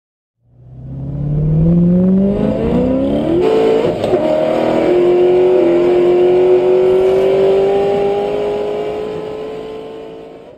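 A vehicle engine accelerating: its pitch climbs for about three seconds, changes step about three and a half seconds in, then runs on as a long, slowly rising tone that fades away near the end.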